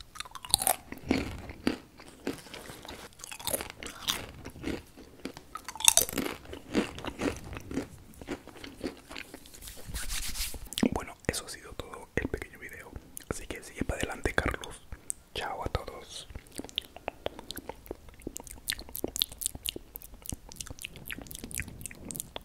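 Crisp chips bitten and chewed right against the microphone, in a run of sharp crackling crunches with wet mouth sounds, loudest in the first few seconds. There is a stretch of voice around the middle.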